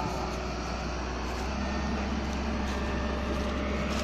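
Distant excavator engine running steadily over a constant outdoor din, with a faint steady engine note coming in about a second and a half in.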